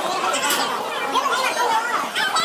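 Many students talking at once in a crowded school hallway: a steady babble of overlapping voices with no single voice standing out.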